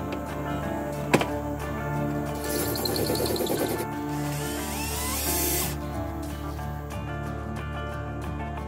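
A cordless drill runs for about three seconds in the middle, drilling out screws in the plastic pack, over background music. A sharp click sounds about a second in.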